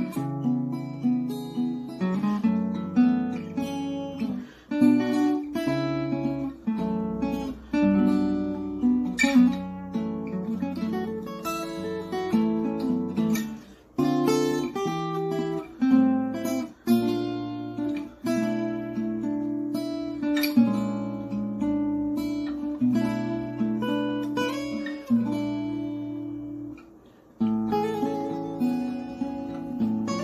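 Solo acoustic guitar playing a slow instrumental piece, chords and melody notes plucked and strummed one after another. The playing stops briefly about halfway through and again shortly before the end, then goes on.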